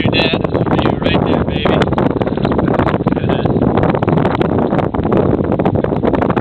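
Strong wind buffeting the microphone: a loud, steady rumble studded with crackles.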